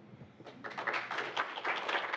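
Audience applauding, starting about half a second in and growing louder.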